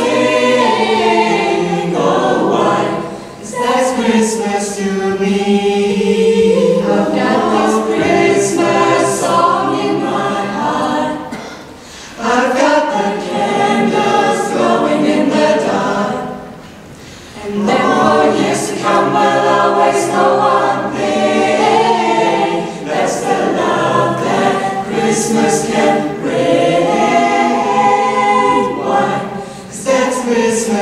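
Mixed-voice a cappella vocal ensemble singing in close harmony through microphones, with no instruments. The song moves in phrases, with short breaths or pauses about three and a half, twelve and seventeen seconds in.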